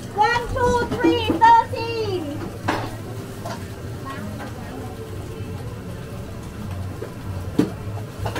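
A person's voice speaking for about two seconds, then a steady low background hum with a couple of short clicks.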